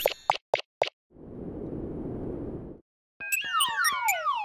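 Cartoon-style sound effects: a few short pops, then a soft whoosh of noise lasting under two seconds, then a quick run of falling whistle-like tones near the end.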